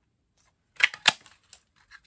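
A handheld craft punch, the Stampin' Up! Trucking Along Builder Punch, pressed down to cut a stamped truck out of paper: two sharp snaps a quarter second apart as the blade cuts and springs back, then a couple of faint clicks.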